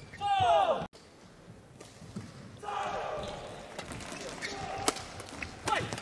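Badminton shoes squeaking on the court floor and the sharp clicks of rackets striking the shuttlecock during a doubles rally, over the noise of the crowd in the hall.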